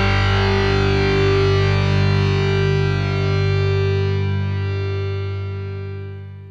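The final chord of a rock song on distorted electric guitar, left ringing and slowly dying away, fading out steeply near the end.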